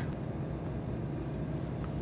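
Steady low rumble of a car's running engine heard inside the cabin, with a faint click near the end.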